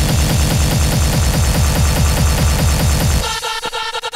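Hardcore techno: a fast, heavy kick drum drives the track, then cuts out a little past three seconds in, leaving a pitched synth tone chopped into rapid stutters.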